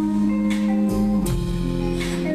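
Live band playing an instrumental passage: guitar chords held over bass, with drum and percussion strikes.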